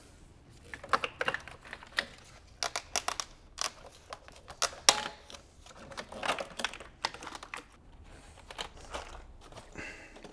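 Gloved hands working plastic engine-bay parts: irregular light clicks, ticks and rustling as connectors and clips are handled and unclipped.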